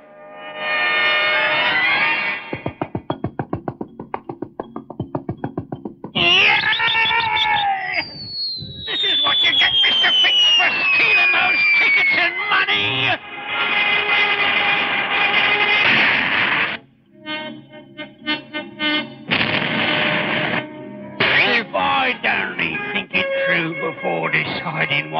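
Cartoon soundtrack of music and comic sound effects. It opens with a run of rapid clicks. About eight seconds in, a long whistle falls steadily in pitch, followed by loud, busy music.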